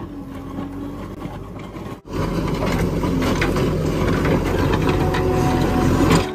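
JCB backhoe loader's diesel engine running while its rear bucket scrapes and crunches through broken asphalt. It gets louder after a sharp break about two seconds in.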